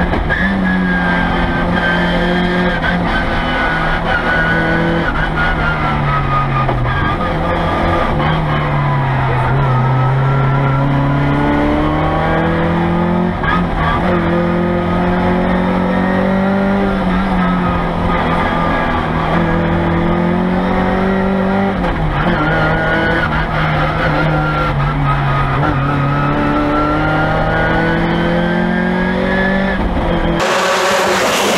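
A rally car's engine heard from inside the cabin while it is driven hard on a stage. The pitch climbs and falls all through as the driver accelerates and lifts, with several sudden drops at gear changes.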